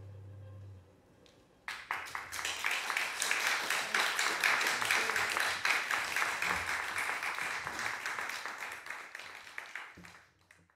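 The cello's last held note fades out, then after a brief hush applause breaks out about two seconds in, holds, and dies away near the end.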